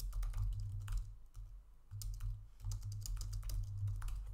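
Computer keyboard being typed on: irregular runs of key clicks with short pauses between, over a low rumble.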